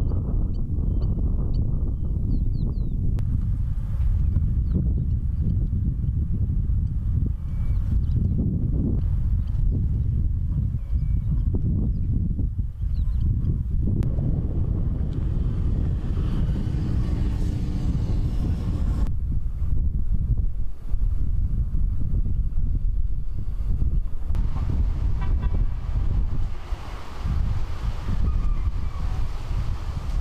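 Wind buffeting the microphone, a heavy low rumble that goes on throughout with uneven gusts.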